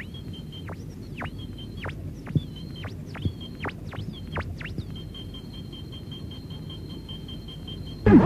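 Quiet passage of an electronic dance mix: synth effects over a low rumble, with a steady pulsing high beep and a string of quick falling zaps. The zaps stop about five seconds in and leave the beep going on its own.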